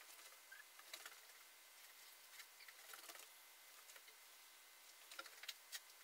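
Near silence with faint, scattered ticks and crackles, most clustered about five seconds in, from 200 ml of water heating in a glass beaker on an infrared lamp heater, short of the boil.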